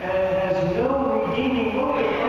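Slow, chant-like singing: voices holding long notes, each about half a second to a second, stepping from one pitch to the next.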